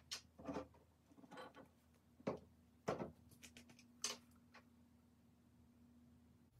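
Faint, irregular clicks and light knocks of plastic epoxy-resin bottles and a small plastic measuring cup being handled and set down on a wooden tabletop, about eight in all.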